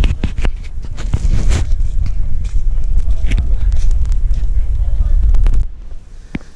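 Wind buffeting a handheld camera's microphone, a heavy low rumble with repeated knocks and rustles from the camera being handled; it cuts off abruptly near the end.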